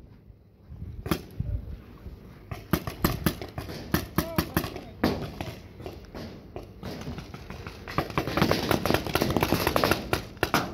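Paintball markers firing in scattered, irregular shots, the sharp pops coming thicker and faster in the last couple of seconds.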